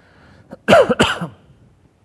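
A man coughing twice in quick succession, a little under a second in.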